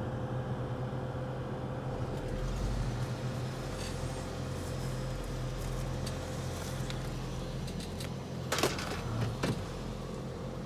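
Steady low hum of a running vehicle engine, with two short sharp knocks about a second apart near the end.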